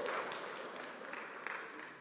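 Audience applause with scattered claps, dying away steadily.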